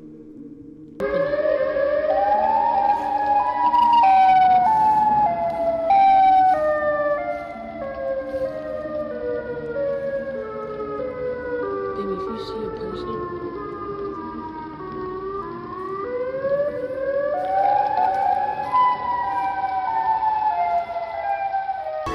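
A siren-like pitched sound, starting about a second in, that steps downward in short notes, glides upward about three-quarters of the way through, then steps down again.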